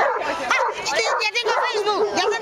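A dog yipping and whining in short, quick calls over people's voices.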